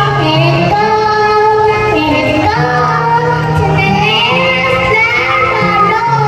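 A young girl singing a song into a microphone, her voice carrying a gliding melody over instrumental accompaniment with held bass notes.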